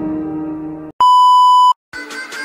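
Background music stops about a second in. A single loud, steady electronic beep follows, lasting under a second and louder than the music. After a short silence, a new guitar music track begins right at the end.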